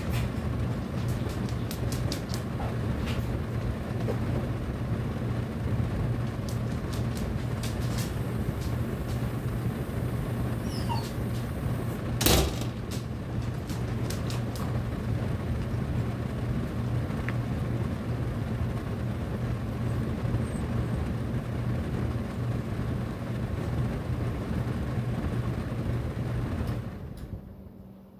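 Steady rush of air at a register of a Miller packaged air conditioner, with a low hum from its blower. A single sharp click comes about twelve seconds in, and the sound falls away near the end.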